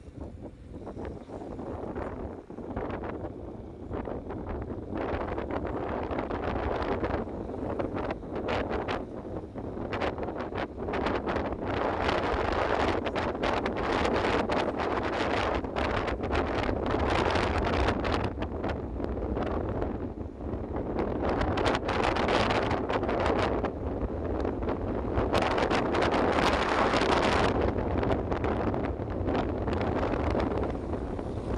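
Wind buffeting the microphone from a moving vehicle, over the low rumble of the vehicle running along a wet road. The wind noise builds over the first dozen seconds and then swells and eases in gusts.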